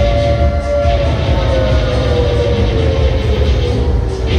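Fairground pendulum ride running: a sustained motor whine that slowly falls in pitch over a heavy low rumble.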